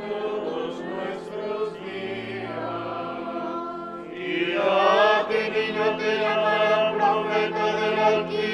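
A choir singing a liturgical chant in Spanish over steady sustained accompanying notes, swelling louder about halfway through.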